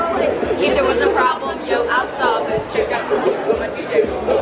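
Chatter of several young people talking at once, close to the microphone.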